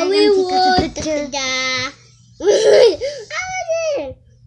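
A young boy singing in a high voice, with long held notes that glide up and down, broken by a short burst of laughter or squealing about two and a half seconds in.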